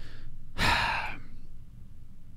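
A man sighing into a microphone: a faint breath, then a louder breathy exhale about half a second in that lasts about half a second.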